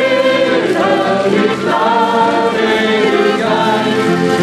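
Several voices singing a song together to accordion and acoustic guitar accompaniment.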